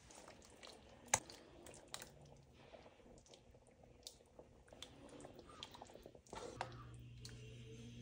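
Faint soft wet sounds and scattered light clicks as chunks of raw fish are dropped by hand into a thick tomato sauce, with one sharper click about a second in. A low steady hum comes in near the end.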